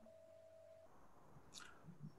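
Near silence: room tone, with a faint steady single-pitched tone for about the first second.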